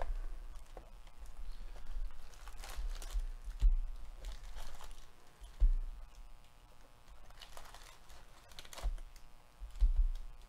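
Hands handling a cardboard hobby box of baseball card packs: rustling and scraping of the packs and box, with several dull thumps. The loudest thumps come a little under four seconds in and near the end.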